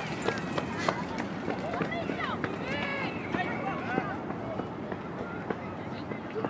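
Indistinct shouts and calls from players and spectators at a youth soccer game, overlapping throughout, with a few sharp knocks scattered among them.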